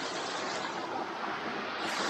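Steady rushing of a small woodland waterfall and stream.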